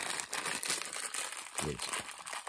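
Thin black plastic wrapping crinkling and rustling as it is handled, with a short vocal sound near the end.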